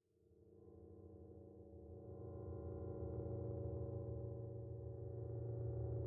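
A sustained synthesized drone, several steady tones with a deep low hum beneath, swelling in from silence over the first three seconds and then holding steady: intro sound design for the opening titles.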